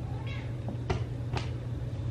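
A house cat meowing once, briefly, followed by two sharp clicks, over a steady low hum.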